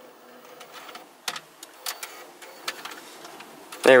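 A cassette adapter pushed into the tape slot of a factory Subaru cassette/CD car stereo, with several separate plastic clicks and a faint mechanism hum as the deck's tape transport takes the cassette in and starts playing.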